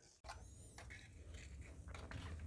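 Near silence: a faint steady low hum with a few soft clicks and scrapes.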